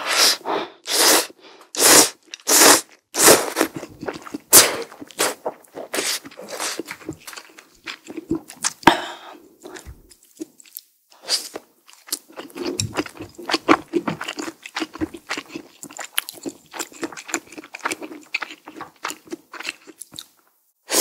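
Close-miked mouth sounds of eating: ramen noodles slurped in a string of short, loud slurps for the first half. Then, after a short pause, softer rapid chewing of a pan-fried gyoza with a slight crunch.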